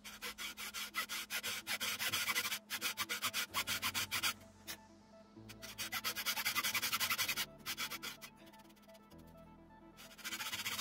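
Fine-toothed hand saw cutting a notch into wood in quick back-and-forth strokes, in several runs with brief pauses, the last strokes near the end quieter. Faint background music underneath.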